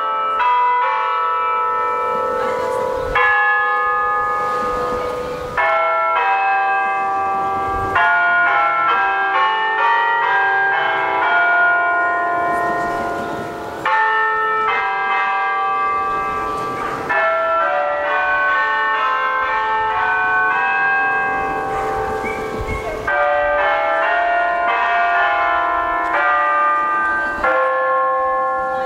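Bells ringing a melody: many overlapping struck notes with long ringing decays, with fresh strikes every few seconds.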